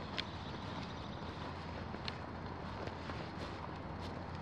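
Faint steady outdoor background hum, low-pitched, with a few faint clicks.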